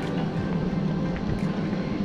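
Steady low rumble of a motor vehicle running, with a hum underneath.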